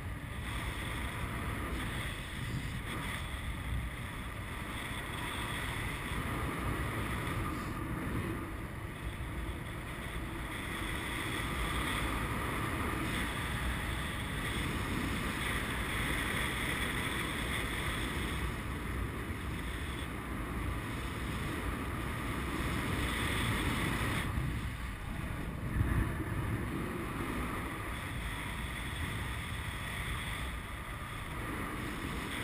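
Steady rush of airflow over the camera microphone of a tandem paraglider in flight, with one brief louder gust a few seconds before the end.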